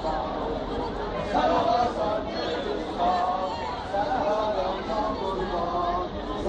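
Chatter of football fans in the stands, with several voices talking over one another.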